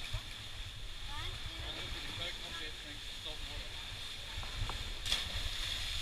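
Wind rumbling on the microphone, with faint, indistinct voices of people talking and a steady high hiss; a brief sharper noise comes about five seconds in.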